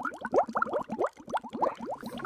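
Bubbling sound effect: a rapid, overlapping stream of short watery bloops, each rising quickly in pitch, several a second.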